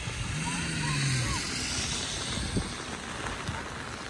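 Steady hiss of rain and wind on the microphone, with faint distant shouts from players on the field. A low hum rises briefly in the first second.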